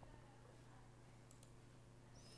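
Near silence: a steady low hum, with two faint computer-mouse clicks close together about a second and a half in.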